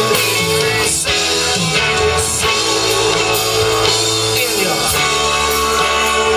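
Live band playing an instrumental passage: guitar over bass and drum kit, steady and loud, with no vocals.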